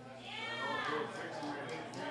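A single wavering note from a blues band, bending up and back down about half a second in, followed by scattered short notes as the next number gets under way, with chatter from the room underneath.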